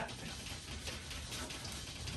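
A brush swishing and scrubbing lightly on canvas, faint and steady, as oil paint is softened and blended across the sky.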